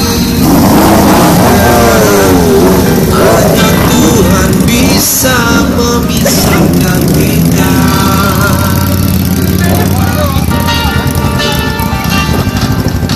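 Several big high-powered motorcycles running and rolling slowly past, their engines rumbling steadily under loud music with a singer from a PA system.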